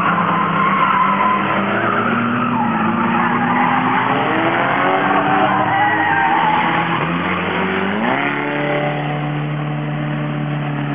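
Several battered oval-track race cars running hard through a bend, engines revving and tyres skidding. One engine's pitch sinks, then climbs sharply about eight seconds in as it revs up again.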